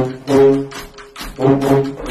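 A Filipino brass band (banda) playing, with horns holding notes in short phrases and a brief lull about halfway through.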